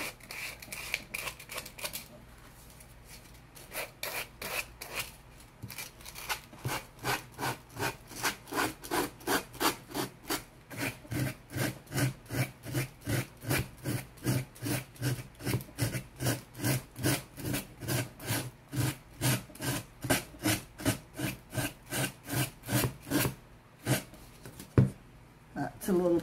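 Fine-grit sanding sponge rubbed back and forth along the edge of a wooden artboard, sanding the overhanging paper flush with the board. The strokes come in a steady rhythm of about two to three a second after a short pause near the start.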